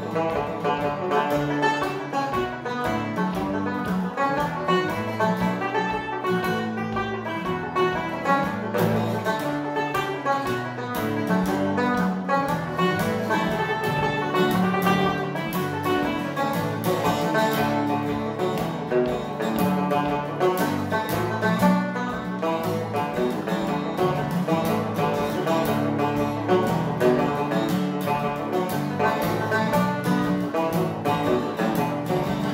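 Banjo picking a quick melody while an acoustic guitar strums chords behind it, the two playing together throughout.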